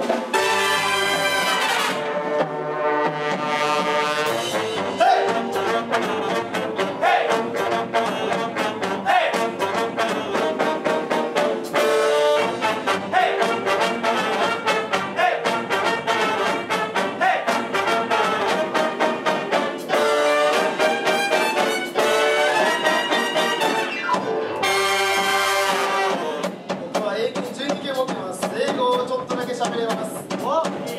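Live jazz big band playing an up-tempo swing number. The saxophone section, trumpets and trombones play in full ensemble over drums keeping a steady cymbal beat, with long held brass chords near the start and again about 25 seconds in.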